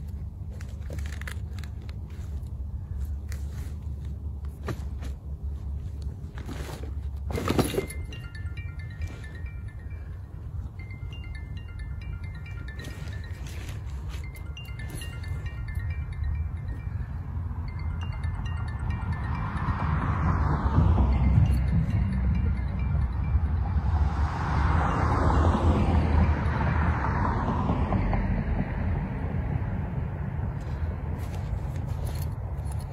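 Low rumble of wind on the microphone, with a sharp click about seven seconds in. Then comes a run of short, faint chime-like tones at several pitches, and two louder swelling gusts near the end.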